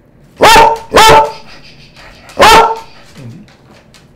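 American Eskimo dog barking three times: two sharp barks in quick succession, then a third about a second and a half later. These are demand barks for a bite of the food held out to it.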